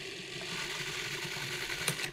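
Food processor running steadily, puréeing a wet red pepper and herb mixture; the motor cuts off right at the end.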